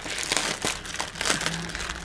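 Clear plastic packaging crinkling and rustling as a bag of loose crystal rhinestones is handled and picked open, with many small irregular clicks.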